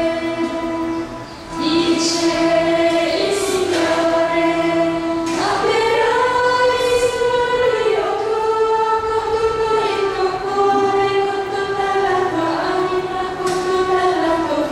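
A group of nuns singing a slow song together as a women's choir, in long held notes that move slowly from pitch to pitch. There is a brief drop about a second in, as at a pause for breath.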